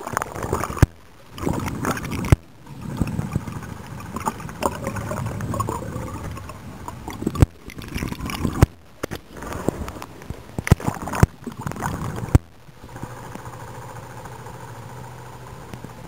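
Water sloshing and gurgling around an underwater camera held below a sailboat's hull on a boat hook, with many sharp knocks and clicks from the camera housing being handled, and abrupt breaks in the sound. A steady low hum comes in for the last few seconds.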